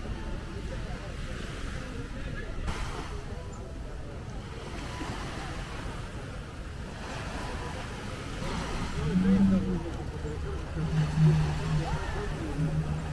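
Steady wind and light surf noise with faint voices. About nine seconds in, the low, steady drone of a jet ski engine running close to shore comes in and grows louder.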